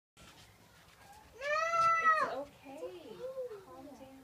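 A loud, high, drawn-out wail lasting about a second, starting about one and a half seconds in, followed by quieter, lower, wavering vocal sounds.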